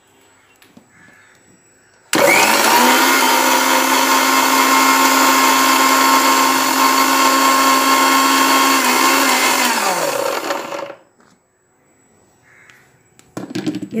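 Electric mixer-grinder motor switched on about two seconds in and running steadily at full speed, grinding soap pieces and a little water into a fine paste. It is switched off after about eight seconds, its pitch falling as the motor spins down.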